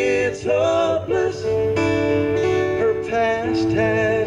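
Live acoustic song: three acoustic guitars strummed and picked, with sung vocals throughout.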